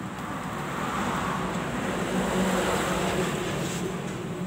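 A honeybee colony buzzing in and around a box hive: a steady hum that swells through the middle and eases a little near the end.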